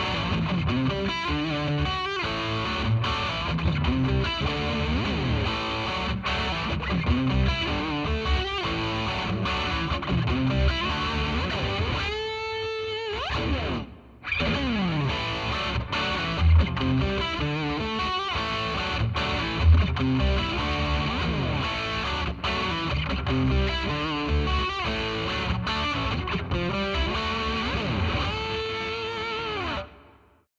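Electric guitar through a DiMarzio Crunch Lab bridge humbucker, played with heavy distortion: the same passage twice, first with the pickup installed backwards, then, after a short break about halfway through, with it in the correct position. Each take ends on a held note with vibrato. The two takes differ only very slightly, the correct position having perhaps a little more presence.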